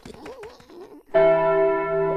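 A large clock bell strikes once about a second in and rings on, a loud tone with many steady overtones.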